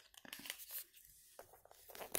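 Faint handling noises from a makeup pencil and its packaging: a few soft, scattered clicks and small rustles, mostly in the first second.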